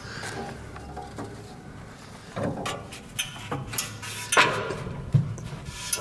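Metal lift door being worked open by hand on its rollers: scraping and a series of knocks, the loudest about four and a half seconds in.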